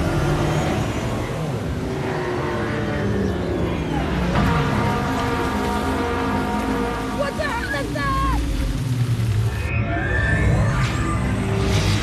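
Action-film sound mix: a dramatic music score over a heavy low rumble and rushing water noise, with shouted voices in the middle.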